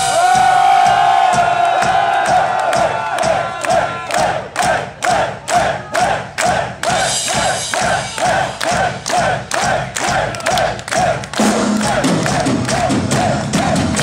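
Shouting at a live concert in place of drumming: one long held shout, then a long run of short rhythmic shouts, about two to three a second, over crowd noise.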